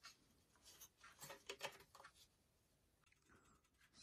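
Near silence, with a few faint scrapes and clicks in the middle: a 3D-printed PLA seatpost clamp being handled on a bicycle frame's seat tube.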